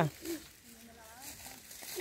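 A man's voice trailing off, then only a faint voice-like sound in the middle of a quiet stretch.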